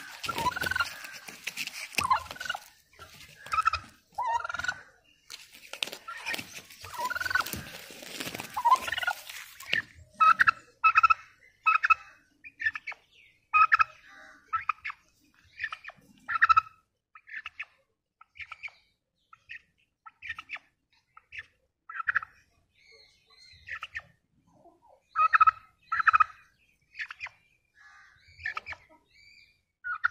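Domestic turkey gobbling and calling in short, repeated bursts, about one a second through the last two-thirds. For the first ten seconds a noisy rustle runs under the calls.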